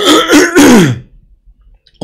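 A man clearing his throat with a rough cough, lasting about a second, its pitch dropping at the end.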